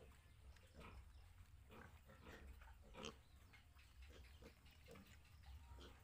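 Faint, short grunts from a group of piglets, coming irregularly several times a second, over a low steady rumble.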